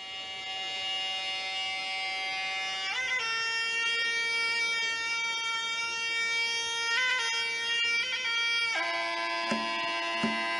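Sarama music for the wai kru ram muay: the pi, a Thai reed oboe, plays long nasal held notes. It steps to a new pitch about three seconds in, again near seven seconds, and just before nine seconds. A few drum strikes come in near the end.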